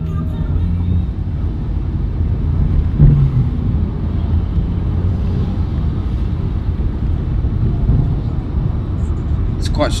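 Steady low engine and road rumble of a moving car, heard from inside the cabin, with one brief louder thud about three seconds in.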